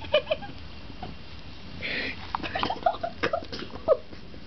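Four-week-old kittens giving short squeaks and mews, mixed with clicks, scratches and rustling from claws and handling on a woven mat close to the microphone.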